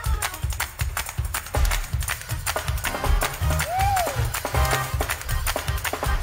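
Live gospel praise music from a church band: bass notes under a quick, steady drum beat.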